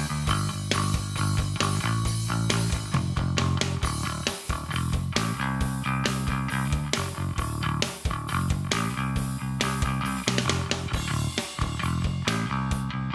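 Non-wood Bogart Blackstone electric bass guitar played finger-style, direct through an Ampeg SVT amp simulation: a steady run of punchy low notes with a hard, direct, piano-like attack.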